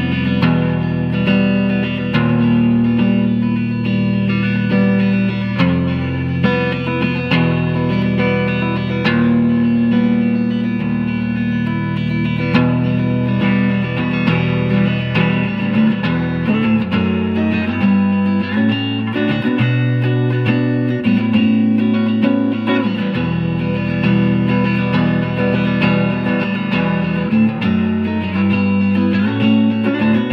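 2019 Fender American Performer Telecaster played clean on its neck pickup through a 1967 Fender Super Reverb amp, in drop D tuning: picked chords and single notes over changing low bass notes.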